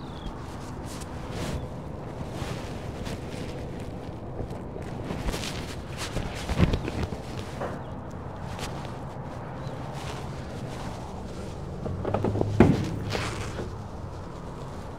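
Rustling of a nylon jacket and a few handling knocks, the louder ones about six and a half and twelve and a half seconds in, over a steady low background hum.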